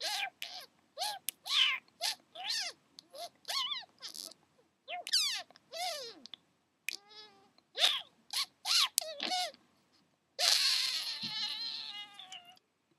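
A rapid string of short, high, cat-like meows, many gliding up or down in pitch. A longer, harsher, drawn-out meow starts near the end.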